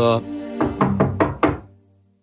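Knocking at a door: about five quick knocks in an even row, fading, over soft background music.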